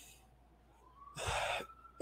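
A man's quick, audible intake of breath through the mouth, a little over a second in, after a moment of quiet room tone.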